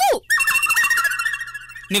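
A shout at the start, then a high electronic tone with a wobbling, wavering pitch that holds for about a second and a half before cutting off. It is a sound effect in the background score.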